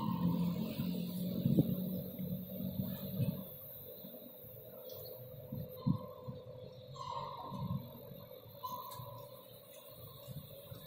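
Construction-site noise heard across the stadium. A steady machine hum lasts about three seconds and then fades. A few short high tones and scattered knocks follow.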